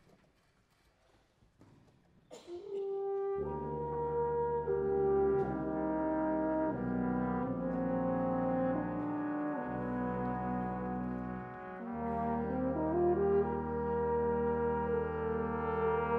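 Near silence, then about two and a half seconds in a single held brass note enters, joined within a second by a full brass and wind band playing sustained, slowly shifting chords over a deep bass. The sound dips briefly near twelve seconds, then the chords go on.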